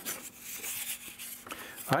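Razor blade scraping along a wooden guitar brace, a dry rubbing rasp of blade on wood, cleaning surface oxidization off the gluing face before it is glued to the top.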